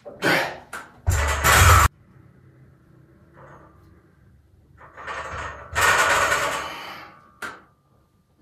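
Forceful, strained breaths of a man bench pressing a heavy barbell, in several noisy bursts. The loudest comes about a second in, and a longer one lasts about a second and a half midway through.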